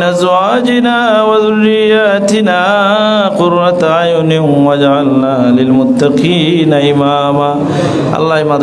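A man's voice chanting a prayer melodically, in long held notes that bend and waver in pitch, with a short break for breath about three seconds in and again about six seconds in.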